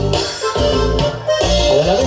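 A live band playing Latin dance music, with a steady bass pattern under a melody line. The sound dips briefly a little over a second in.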